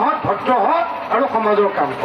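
A man speaking into a handheld microphone, his voice carrying throughout.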